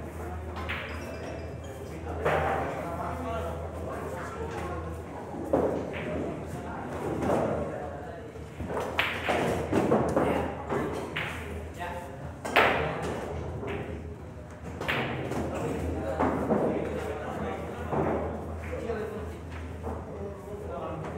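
Pool balls clicking: a cue tip striking the cue ball and balls knocking together, with the sharpest click about twelve seconds in. Low background talk and a steady low hum carry on underneath.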